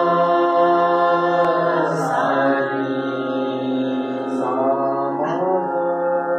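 A voice singing long held notes in a vocal exercise, sliding to a new pitch about two seconds in and again near the end.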